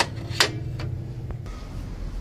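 Two sharp clicks about half a second apart, from hand tools being handled, over a steady low hum.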